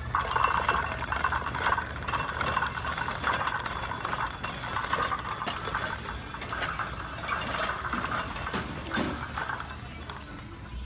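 Wire-frame shopping cart loaded with secondhand goods rattling on the move, with many small clicks and clinks from the metal basket and the items in it.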